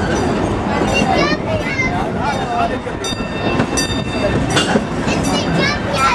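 Passenger cars of a narrow-gauge park railroad rolling along the track: a steady rumble with wheel clatter, riders' voices over it, and a high steady tone for about a second near the middle.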